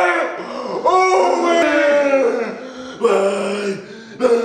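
Men's drawn-out, pained vocal cries from wide-open mouths: several long cries, each held and sliding down in pitch.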